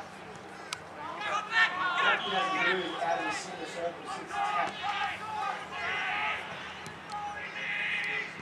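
Voices calling and shouting during a game of Australian rules football, with one sharp click about three-quarters of a second in.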